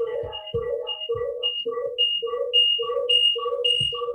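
Audio feedback loop on a video call: the same electronic tone pulses on and off about three times a second and grows louder.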